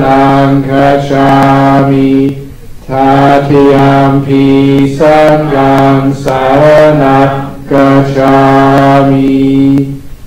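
Buddhist devotional chanting in Pali, voices holding long phrases on a few steady pitches, with short breaks between phrases about two and a half and seven and a half seconds in.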